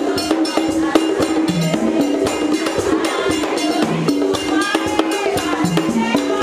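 Haitian Vodou ceremonial music: drums and rattles keeping a steady, driving rhythm, with voices singing over them.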